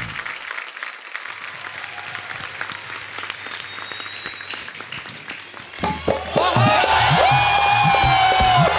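Studio audience applauding. About six seconds in, loud music strikes up, a melody with sliding notes over a beat.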